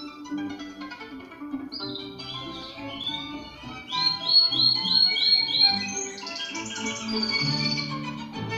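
Orchestral music played through a vacuum-tube OTL (output-transformerless) amplifier, with a pet canary singing over it. The canary gives a rising chirp about two seconds in, a run of repeated high notes about four seconds in, and a quick, higher trill near the end.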